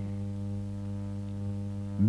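Steady low drone of background music, one chord held unchanged throughout.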